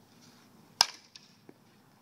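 A softball bat hitting a pitched softball: one sharp crack a little under a second in, followed by two faint knocks.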